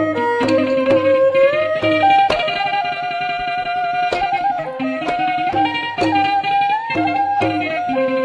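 Traditional Khmer classical (pleng boran) wedding ensemble playing an instrumental passage: a sustained melody with sliding notes, punctuated by sharp percussion strikes.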